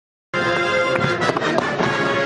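Massed military band of brass and woodwind playing sustained chords, starting about a third of a second in. Several sharp bangs from pyrotechnics cut through the music around one to one and a half seconds in.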